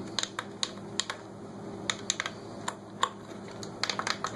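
Plastic clicks from a hand-held 2.4 GHz quadcopter radio controller as its sticks, switches and trim buttons are worked by hand, a quick run of a dozen or so irregular clicks. It is a check of the controls after the case has been reassembled.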